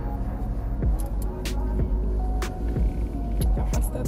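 Background music over a steady low rumble of a car cabin, with a few sharp clicks scattered through.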